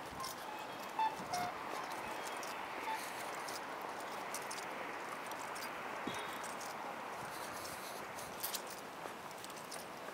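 Footsteps on pavement while walking across a street, with a few small clicks over a steady hiss of outdoor street noise.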